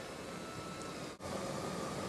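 A steady hiss of background noise with no distinct event, cutting out for an instant a little over a second in and then going on with a faint steady hum under it.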